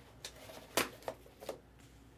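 Trading cards in plastic top loaders and magnetic holders being handled and set down, giving about four light clicks and taps.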